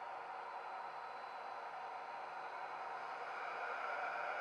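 Steady hiss with a faint hum, growing slightly louder near the end: a model train's ESU sound decoder playing the standing sound of an electric locomotive through its small speaker.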